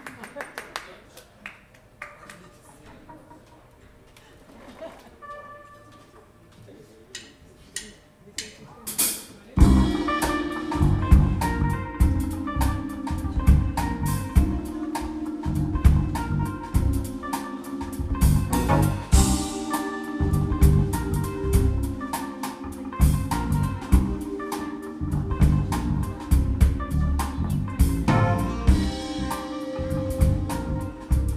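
A few scattered soft clicks and isolated notes, then about ten seconds in a live jazz band comes in together: drum kit and electric bass loud and rhythmic under keyboards and guitar.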